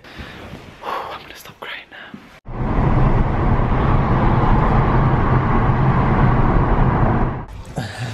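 Steady road and engine noise heard from inside a moving car. It cuts in abruptly about two and a half seconds in and stops abruptly about seven and a half seconds in, after a couple of seconds of a quiet, breathy voice.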